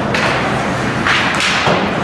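Thuds of ice hockey play against the rink boards and glass: one near the start and a louder, noisier one about a second in.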